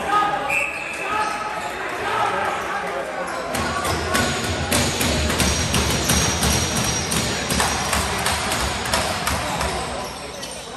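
Box lacrosse play on an arena floor: people shouting and calling out, then from about three and a half seconds in a dense clatter of sharp knocks and clacks from sticks, ball and feet as the players converge.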